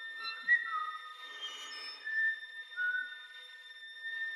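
Flute whistle tones: thin, pure, quiet high tones held and stepping between a few pitches, with a brief louder accent about half a second in. Soft breathy 'shee' sounds from voices and sparse quiet violin notes sit underneath.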